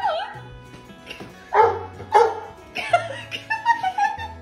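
A pale retriever-type dog barking through a glass door, about four barks after a first call that wavers in pitch, over background music with a steady bass line.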